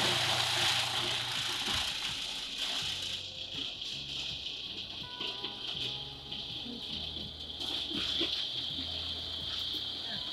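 Countertop food processor running steadily, chopping dates and nuts into a sticky paste. Rock music plays over it.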